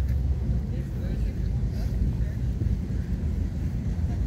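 A steady low rumble of background noise, with faint voices in the distance.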